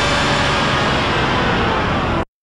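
A dense, steady wash of distorted electronic noise with faint tones buried in it, a heavily processed sound effect.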